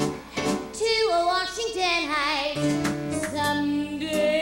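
A woman singing a show tune with live band accompaniment. She holds a long note with vibrato near the middle, over steady drum hits.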